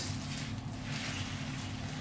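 Hot water pouring from a pot into a plastic bag of crushed instant noodles, faint, over a steady low hum.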